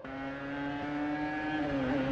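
Racing car engine growing steadily louder as it approaches, its pitch drooping near the end as it begins to pass.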